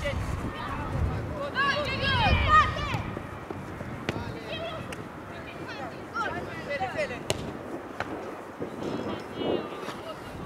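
Footballers shouting calls to each other on an outdoor pitch, loudest a second or two in and again near the end, with a few sharp knocks of the ball being kicked, about four seconds in and twice more around seven and eight seconds.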